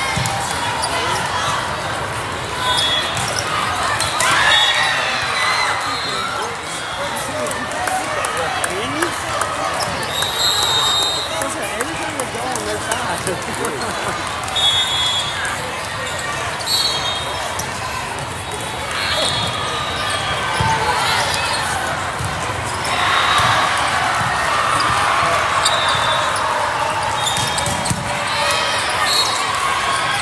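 Indoor volleyball play in a large hall: balls being struck and bouncing off the sport court in frequent sharp knocks, with short high squeaks of shoes on the court, over a steady background of many voices from players and spectators.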